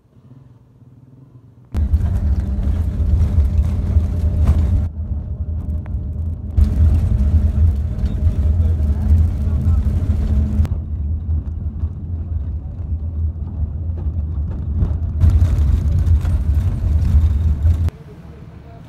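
Loud engine and road rumble of a moving vehicle heard from aboard, with a steady low drone. It starts suddenly about two seconds in, and a hiss over it cuts in and out abruptly several times.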